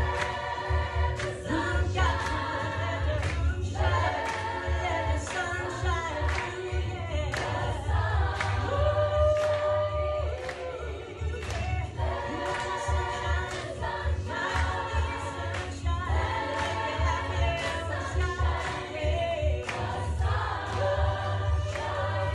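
Women's chorus singing in harmony, several voice parts at once.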